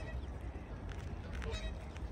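Canada geese honking, a couple of short calls about halfway through, over a steady low rumble of wind on the microphone.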